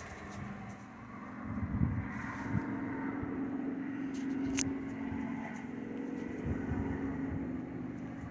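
A steady low motor hum that swells about a second in and drops away near the end, with one sharp click about halfway through.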